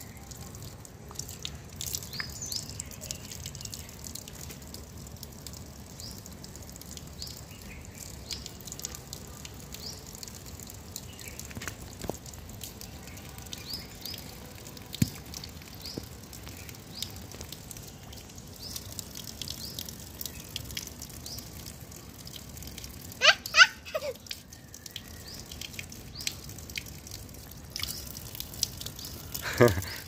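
Thin stream of water running from an outdoor wall tap, pattering and splashing onto wet stone and over a mango held under it, with scattered small drips and splashes. A short high-pitched vocal sound stands out about three-quarters of the way in.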